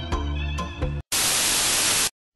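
Music with a beat cuts off abruptly about halfway, and after a split-second gap a loud burst of white-noise static runs for about a second before stopping dead: a static sound effect used as an edit transition.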